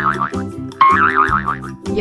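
A cartoon boing sound effect, a quick wobbling warble, heard twice over children's background music with a steady beat.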